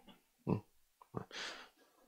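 A man's short nasal "eung?" grunt into a close handheld microphone, then a breath into the mic.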